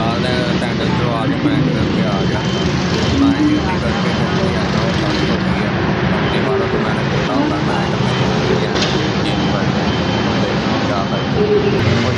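A man talking to the camera over a loud, steady background rumble and hum.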